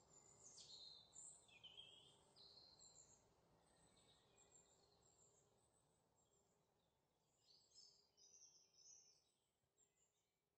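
Near silence, with faint high chirps and short falling whistles that come and go, clustered in the first few seconds and again near the end.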